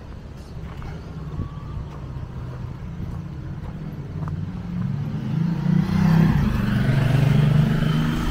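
Motorcycle engine approaching along the road, a steady low hum growing louder over the last few seconds.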